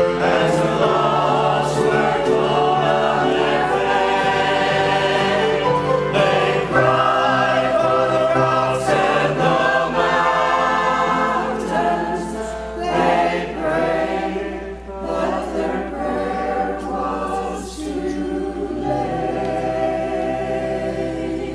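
A mixed choir of men's and women's voices singing together, the chords held and moving, somewhat softer in the second half.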